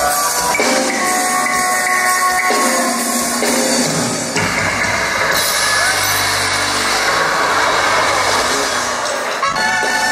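A live band playing dance music. About four seconds in, the clear held notes give way to a denser, noisier sound that lasts until shortly before the end.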